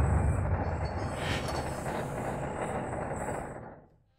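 Machinery sound effect for a turning-gears transition: a steady, dense mechanical noise with a deep low end, fading out near the end.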